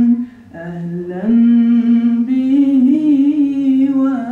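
Solo unaccompanied male voice in religious chanting, holding long, ornamented notes. It dips briefly and lower about half a second in, then holds a long note from just after a second with wavering ornaments.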